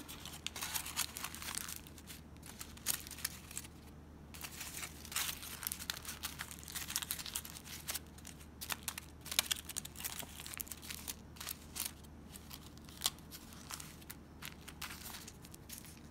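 Aluminium foil being folded and pressed by hand into a small parcel, giving irregular crinkling and crackling rustles.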